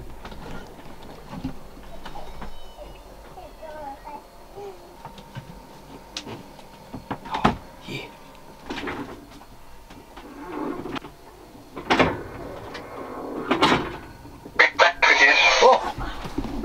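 Faint squeaky, wavering humpback whale calls, with scattered knocks and bumps inside a boat cabin and a louder rush of noise near the end.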